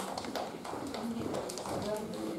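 A child's footsteps, a run of irregular light taps of school shoes on the hall floor, with quiet voices murmuring underneath.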